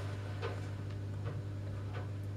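Steady low hum with two faint ticks, about half a second in and again past the middle.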